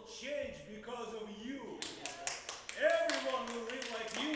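Spoken stage dialogue. From about halfway through, a quick, irregular run of sharp taps or claps sounds under the voice.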